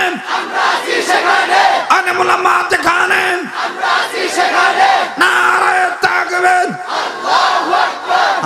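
A man weeping and wailing loudly into a microphone, long pitched cries each held about a second before breaking off in a downward drop, one after another, with crowd voices around them.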